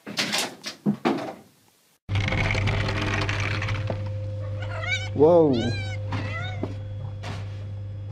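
A few short meows from a cat, each rising and falling in pitch, over a steady low hum. A brief flurry of scuffs and knocks comes near the start.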